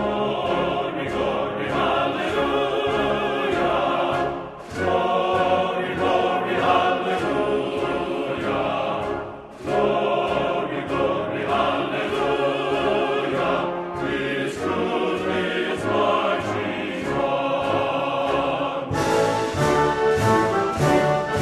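Classical music: a choir or operatic voices singing with orchestra, with short pauses between phrases about four and nine seconds in. Near the end the music changes to a fuller orchestral passage.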